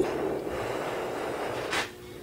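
A person's long breath out followed near the end by a short, sharp sniff.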